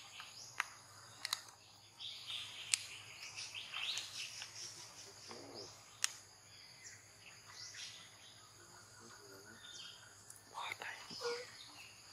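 Birds chirping over outdoor ambience, with a few sharp clicks in the first half.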